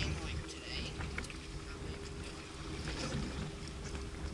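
Water lapping and slapping against a boat's hull, with wind on the microphone as a low rumble and scattered small clicks and splashes; a faint steady hum runs underneath.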